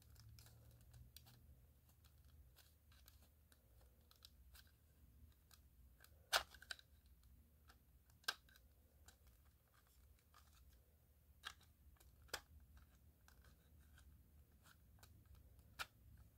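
Near silence broken by a handful of short, sharp plastic clicks, the clearest about six seconds in. They come from a flathead screwdriver prying at the snap-in clips of an SA303 smoke detector's plastic casing to work them loose.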